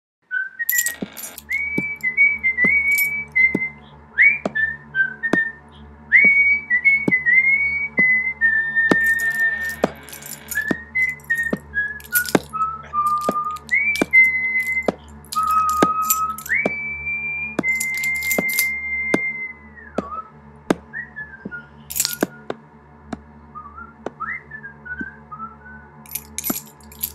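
A person whistling a tune of held notes with quick slides between them, over a steady tick of about one a second and a low constant hum. A few brief clicks or jingles are heard alongside.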